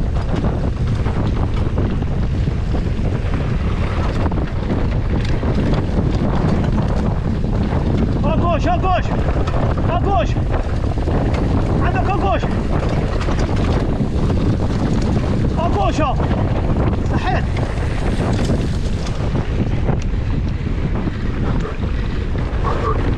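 Heavy wind buffeting on a camera microphone mounted on a downhill mountain bike at speed, over the rumble and rattle of the bike on a rough dirt trail. A few short pitched sounds cut through around the middle.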